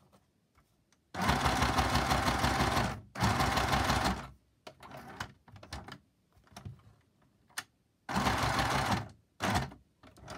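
Small John Lewis mini sewing machine stitching through card on a long straight stitch, in short runs: about a second in for two seconds, again just after three seconds, and near the end. Softer rustling and tapping of the card being turned comes between the runs.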